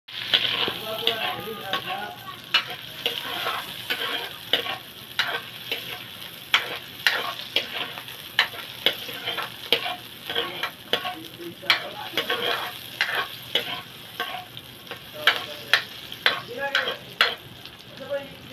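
Sliced onion and garlic sizzling in hot oil in a metal wok while a metal ladle stirs them, clinking and scraping against the pan in irregular strokes, one or two a second.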